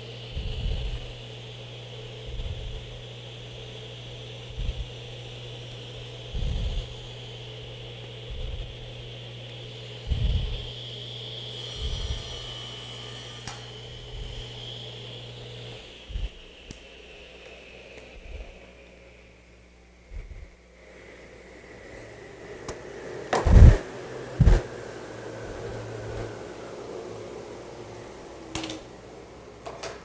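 Table saw coasting down after being switched off: a thin steady whine that falls slowly in pitch over the last half or so. Wood and clamps are handled on the saw table, with soft bumps and two sharp knocks near the end.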